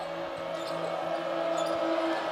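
Basketball arena game sound: a ball being dribbled on the hardwood court over the crowd's noise, with a steady low hum held underneath.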